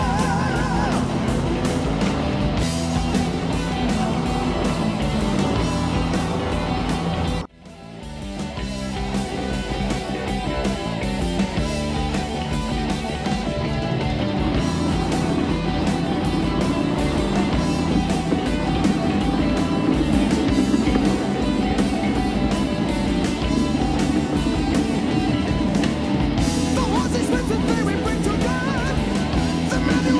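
Rock music with guitar laid over the footage. About seven seconds in it cuts out abruptly, then swells back in over a second or two.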